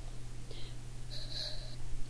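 A pause in a woman's speech: a soft breath about a second in, over a steady low electrical hum.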